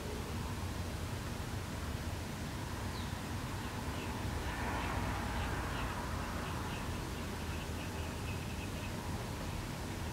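Quiet room tone with a steady low hum. Through the middle, a faint series of short high chirps repeats about twice a second.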